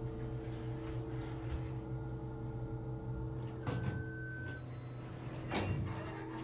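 Elevator car doors sliding open on arrival, over a steady hum. A short electronic beep sounds about four seconds in.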